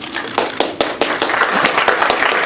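Audience applause: a few scattered claps about half a second in, thickening into steady clapping by the second half.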